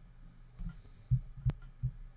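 A few dull, low thuds about half a second apart with one sharp click among them: computer keys or a mouse being struck, heard through the desk.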